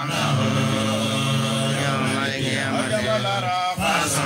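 Men chanting Islamic devotional verses in Arabic together into handheld microphones, amplified. The chant moves in long held notes, with a brief break in the voices just before the end.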